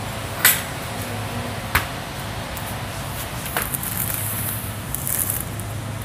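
Steady low hum of a shop's background noise, with three sharp short knocks spread over the first few seconds and a brief high rustle later on.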